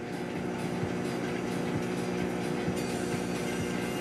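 A steady background hum with a few faint held tones, even in level and without any sudden sounds.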